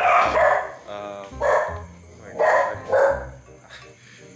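Dog barking, several short loud barks, added as a sound effect.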